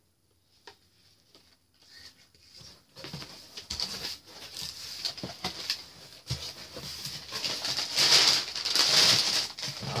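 Brown packing paper and a cardboard box rustling and crinkling as paper plates are pulled out. It is nearly quiet at first and builds from about three seconds in to its loudest near the end, with many small crackles.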